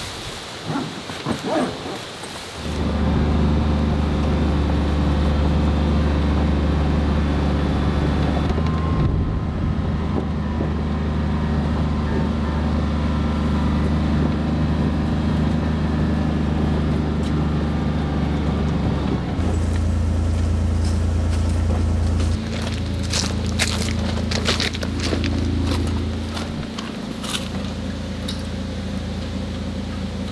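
Side-by-side utility vehicle's engine running with a loud, steady low drone, heard from inside the cab. In the second half the pitch shifts a few times, and clicks and rattles come in near the end.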